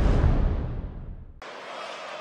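Broadcast graphics transition sound effect: a deep boom with a falling whoosh that fades over about a second and a half, then cuts off suddenly.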